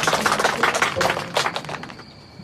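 A small group clapping: dense, irregular handclaps that fade away near the end.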